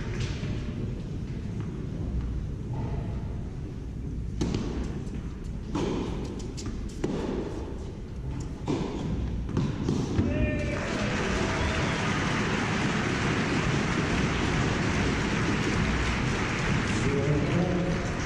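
A tennis point in play: the ball bounced before the serve, then about five sharp racket hits on the ball in a rally. After the point ends, the crowd applauds for about seven seconds.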